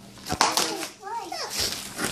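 Young children's voices, talking and exclaiming indistinctly, with a short click about a third of a second in.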